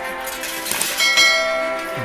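A bright bell-like chime rings out about a second in and sustains, over a steady background music tone: the ding sound effect of a YouTube subscribe-and-bell animation.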